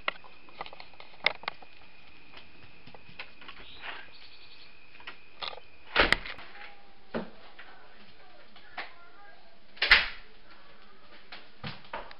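A door being opened and shut: sharp knocks and clicks, the two loudest about six and ten seconds in, over a steady hiss. A thin, high, steady tone runs through the first half and stops about six seconds in.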